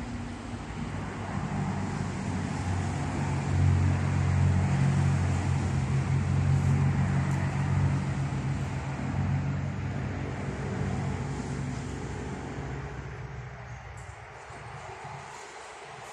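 A motor vehicle's engine running nearby with a steady low hum. It grows louder over the first few seconds and fades away in the last few seconds.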